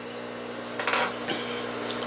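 A steady low hum with a faint, short noise just under a second in.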